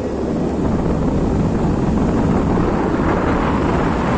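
Steady low rumbling of a vehicle travelling along a road, with wind buffeting the microphone.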